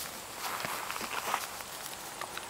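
Donkey grazing close by, tearing and chewing grass: faint rustling with soft, irregular ticks.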